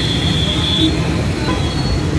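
Street traffic: a steady low rumble of engines and road noise, with a thin high-pitched squeal that stops about a second in.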